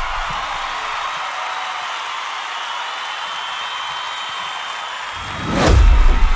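Animated end-card sound design: a steady shimmering noise drone with a few faint held tones, then a swell into a loud, deep whooshing hit near the end.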